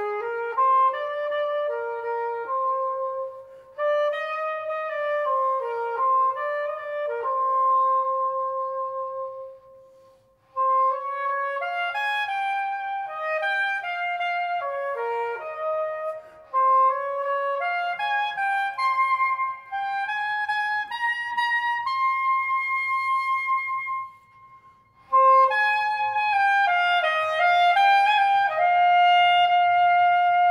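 Solo woodwind instrument playing a slow melody in phrases separated by short pauses.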